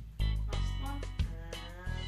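Background music: an instrumental led by a plucked guitar over a steady bass line.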